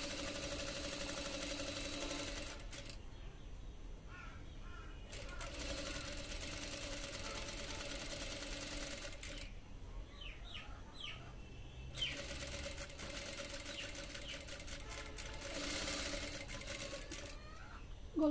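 Industrial single-needle lockstitch sewing machine stitching a band collar onto a garment's neckline. It runs in three spells of a few seconds each, with short pauses between, a steady hum under a fast rattle of stitches.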